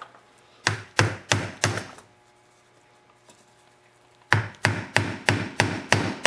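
A hammer striking the top of a 2-inch ABS plastic pipe used as a driver to tap an oil seal into an ATV front wheel bearing bore. There are four quick blows, a pause of about two seconds, then a run of about six more, roughly three a second.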